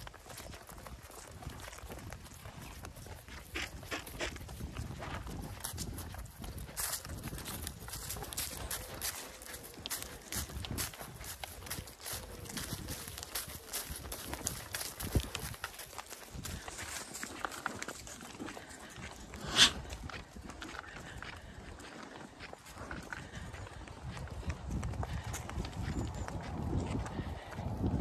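Hooves of Zwartbles rams tapping and clicking on a tarmac lane as the small group walks along, in irregular steps with one louder click a little after two-thirds of the way through, over a low rumble.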